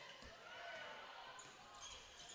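Faint game sound from a basketball court: a ball being dribbled on a hardwood floor, under a low hall ambience.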